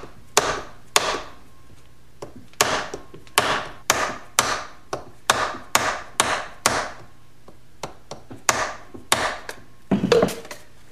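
Dead blow hammer whacking a driver to seat the final drive output shaft seal into the crankcase: about fifteen sharp whacks in quick, uneven succession, with a pause about two thirds of the way through.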